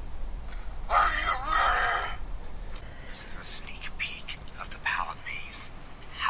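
A voice on a short video clip playing through a phone's speaker, loudest about a second in and broken up after.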